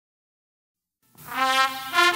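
Silence for about the first second, then a ska-punk song starts with brass horns playing held, buzzy notes, the pitch shifting near the end.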